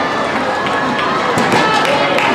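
Young football players slapping hands as they file past in a post-game handshake line: a string of short sharp slaps a fraction of a second apart, over the chatter of young voices.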